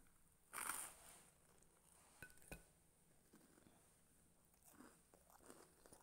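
A bite into crispy grilled food: one loud crunch about half a second in, then quiet chewing.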